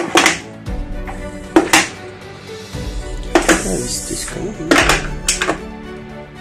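Background music, over which come a handful of sharp clacks as letter and number dies are set by hand into the tray of a licence-plate press.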